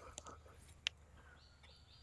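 Quiet outdoor ambience with one sharp click a little under a second in, as a shovel works compost out of a wheelbarrow, and a faint high call through the middle.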